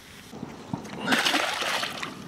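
A catfish being released and splashing at the water's surface, loudest in the second half.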